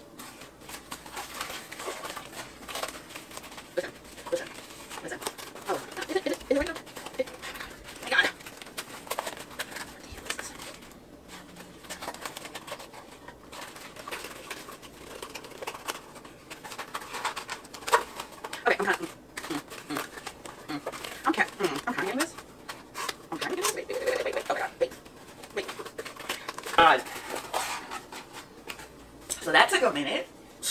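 A small, thin cardboard box being folded and fitted together by hand: scattered scrapes, creases and short taps of cardboard, with a woman's low murmuring and vocal noises between them.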